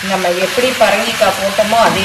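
Cubed yellow pumpkin frying in a cast iron kadai, a steady sizzle with scraping and stirring from a wooden spatula. A voice talks over it.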